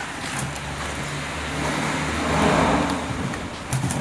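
A motor vehicle passing: a steady engine hum with road noise that swells to its loudest about two and a half seconds in, then fades. A few light clicks come from the plastic flex board being handled.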